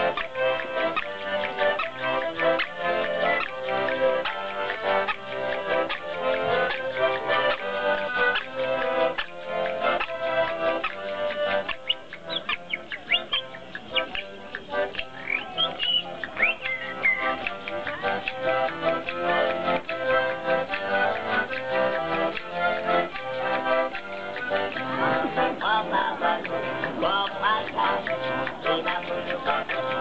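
Accordion music with a steady rhythmic pulse, played by a one-man street band. High warbling toy calls sound over the accordion about twelve seconds in and again near the end.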